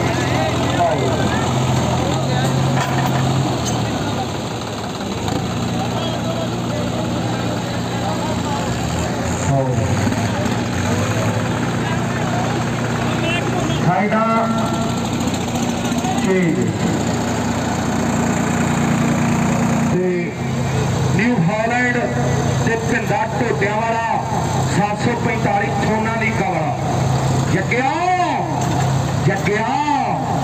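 Diesel tractor engines running hard at full load in a tractor tug-of-war, a Sonalika pulling against a New Holland 5620, giving a steady deep drone. Voices are shouting over it, more in the second half.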